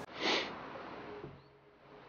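A single short sniff through the nose about a quarter second in, followed by faint hiss that fades away.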